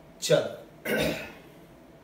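A man clearing his throat twice, two short harsh bursts about two thirds of a second apart.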